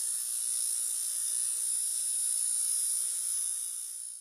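Steady, high-pitched electronic buzz with a hiss, a synthetic sound effect under an animated logo intro. It starts abruptly and eases slightly near the end.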